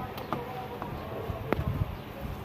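Close handling noise of fingers twisting thin wire leads together: a few sharp clicks and soft low knocks, two of the clicks close together about a second and a half in.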